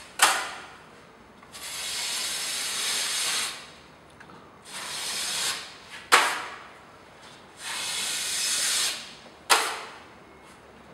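A 200 mm steel drywall blade is scraped along a flat joint, spreading and feathering joint compound by hand. There are three long scraping strokes of one to two seconds each, and three sharp clicks in between.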